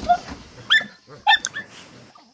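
Dogs giving a few short, high-pitched yips in two brief clusters around the middle, about half a second apart.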